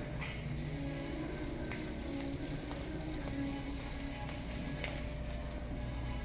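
Background music, most likely the store's own music, playing over a steady low hum, with a few faint clicks.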